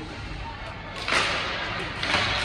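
Ice hockey play on rink ice: one sudden sharp sound about halfway through that rings on in the large arena, over faint voices.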